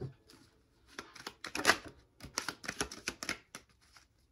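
A deck of cards being shuffled by hand: a quick run of sharp card flicks and slaps, starting about a second in and stopping shortly before the end.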